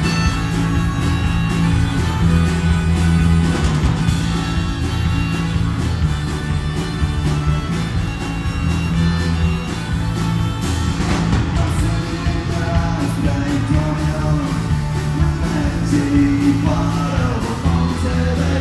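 Live punk rock band playing a song's opening: electric guitar, electric bass and drums, with harmonica.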